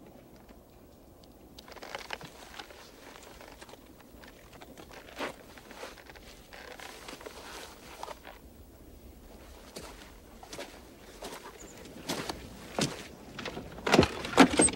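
Quiet room ambience broken by scattered, irregular clicks and knocks like footsteps, growing more frequent and louder over the last couple of seconds.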